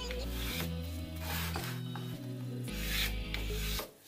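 A homemade pencil marking gauge being drawn along the edge of a board in several strokes, its wooden fence and pencil point scraping over the surface.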